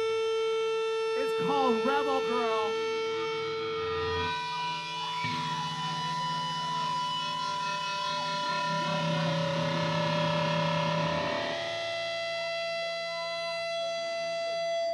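Live band holding a sustained, droning chord through effects, with a wavering sung voice in the first few seconds and a low held bass note from about five to eleven seconds in.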